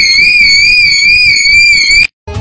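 A long, loud, high-pitched scream held on one pitch with a slight waver, cutting off abruptly at the end.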